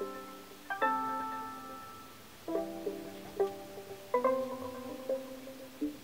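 A software synthesizer on an iPad playing a plucky, bell-like sequence of chords and single notes, each struck and then fading away, about six in all. It is played by MIDI data sent from a MacBook over Wi-Fi.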